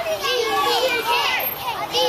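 A group of young children's voices talking and calling out over each other, a busy, overlapping chatter.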